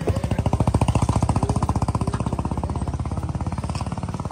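An engine running close by with a fast, even throb, loudest about a second in and easing off a little after.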